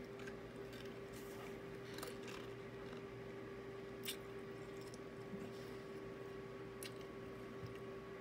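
Faint mouth sounds of someone tasting a potato chip: a few soft, scattered clicks and smacks over a steady low hum in a quiet room.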